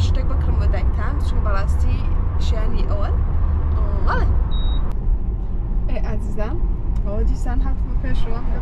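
Steady low road rumble inside a moving car's cabin, under people talking, with one short high beep about four and a half seconds in.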